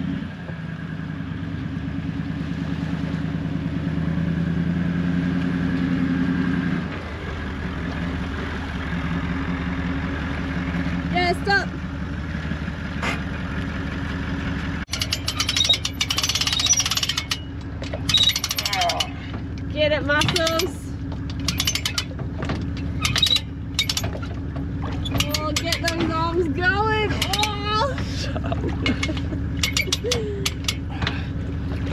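Hand-cranked boat trailer winch ratcheting in rapid runs of clicks as an aluminium dinghy is wound up onto the trailer, over a steady low drone that is loudest in the first few seconds. A voice is heard in places.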